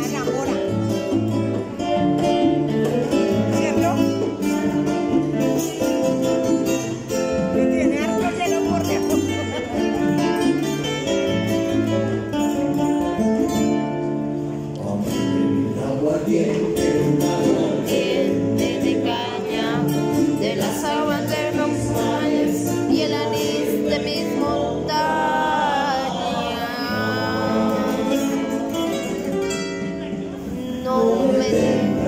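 Live Latin guitar trio: two acoustic guitars picking and strumming over a pair of congas, with male voices singing in the latter part.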